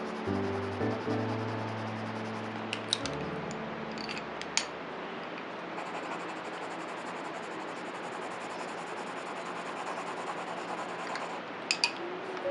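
Soft background music notes that die away in the first half, leaving a steady scratch of graphite pencil shading on sketchbook paper. A few sharp clicks come through, the last pair near the end.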